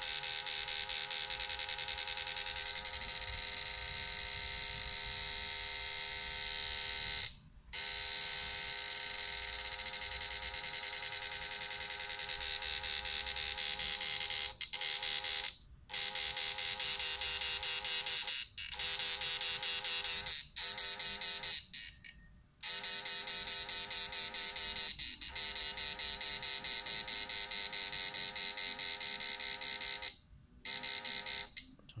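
Homemade push-pull inverter's transformer and driver buzzing with a steady, high-pitched electrical tone while it powers two incandescent bulbs; the pitch is the audible chopping frequency of its multivibrator-pulsed drive. The buzz cuts out briefly about six times, longest near 22 seconds in.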